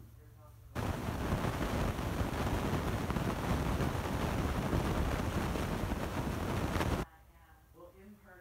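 A loud, steady rushing noise that starts abruptly about a second in and cuts off suddenly near the end.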